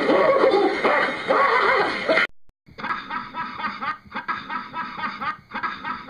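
A man laughing hard in quick repeated bursts, starting after a cut about two and a half seconds in; before the cut, a loud wavering stretch of voices.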